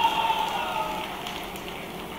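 Audience applause and crowd noise in a large hall, dying away.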